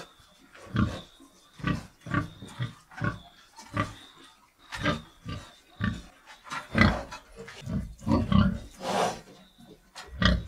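Domestic pigs grunting: short, separate grunts about once a second, coming quicker together late on.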